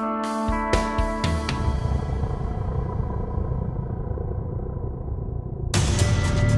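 Demo music built on the Quartarone Guitar Reveries cinematic guitar sample library: sustained chords with drum hits stop about a second and a half in, leaving a low, dark drone. Near the end a loud new section enters with fast, evenly spaced ticking percussion.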